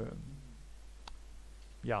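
A single short click about a second in, from a computer mouse button.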